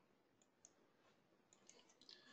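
Near silence: room tone with a few faint clicks, a couple about half a second in and a few more near the end.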